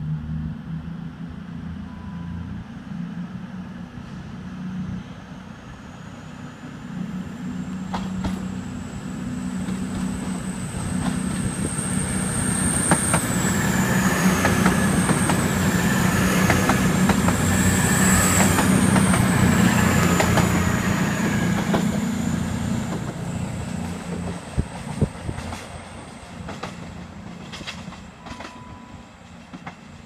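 Class 220 Voyager diesel-electric multiple unit running past along the platform, its underfloor diesel engines making a steady low drone that builds to loudest about halfway through as the cars go by, then fades. Wheel clicks over the rail joints come through the loud middle part, with a high whine above that rises and dips several times.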